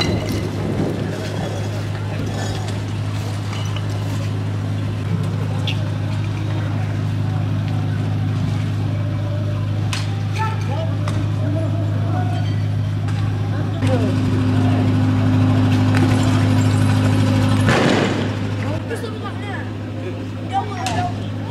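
Armoured police truck's engine running with a steady low hum, growing louder about two-thirds of the way through. A sudden loud burst of noise comes near the end, with scattered sharp knocks and distant voices throughout.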